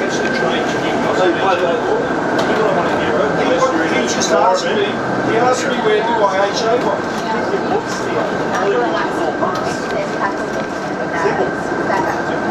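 Many voices talking over one another inside a crowded city bus, over the bus's running noise, with a steady high-pitched tone.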